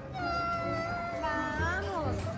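A young boy crying: one long, drawn-out wail, then a shorter one that falls in pitch near the end.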